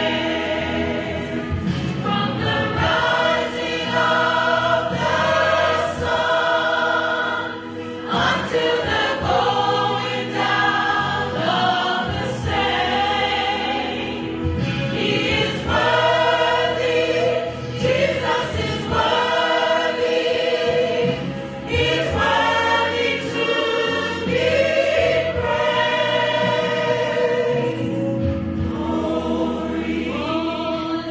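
A choir of mainly women's voices singing a hymn together, in sustained phrases broken by short pauses for breath.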